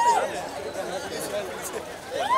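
Crowd of people talking and calling out over one another, with one louder call near the start.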